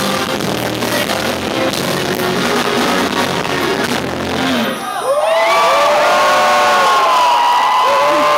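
Live band music ending about two-thirds of the way through, followed at once by a louder burst of audience cheering with drawn-out whoops and screams.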